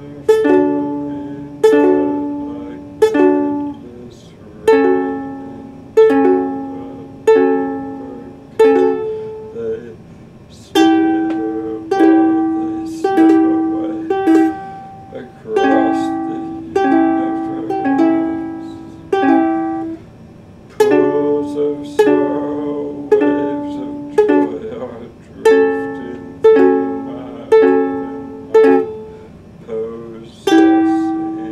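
Ukulele chords strummed slowly, about one strum a second, each chord left to ring and fade, with a couple of short pauses between phrases.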